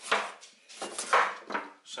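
Chef's knife slicing thin pieces off a fresh ginger root, a couple of short scraping cuts about a second apart.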